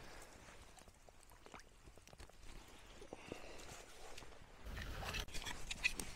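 Faint rustling, scraping and small clicks of someone moving about at a stream's edge, louder over the last second or so.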